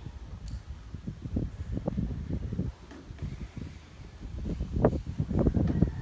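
Wind buffeting the microphone of a handheld phone during an outdoor walk: an irregular low rumble that gets louder near the end.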